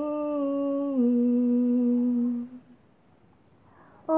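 A woman singing unaccompanied, holding one long note that steps down to a lower note about a second in and fades out a little past the middle; after a short pause her voice comes back at the very end.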